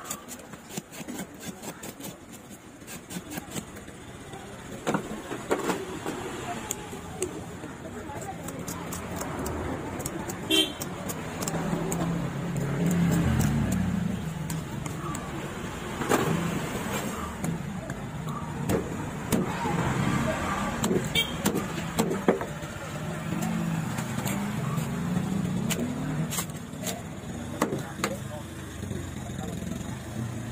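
Knife scraping scales off a large fish and knocking on a wooden chopping block, over street traffic: a vehicle engine running, horns honking and voices in the background.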